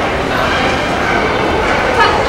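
A dog barking over a background of voices.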